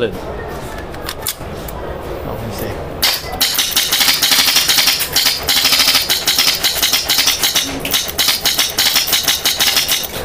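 Airsoft gun with a Nexxus HPA engine, run on high-pressure air from a tank, firing a long rapid string of BBs: a fast, steady rattle of shots. It starts about three seconds in and runs for some seven seconds, ending just before the end. Before it there is only hall ambience and a few faint clicks.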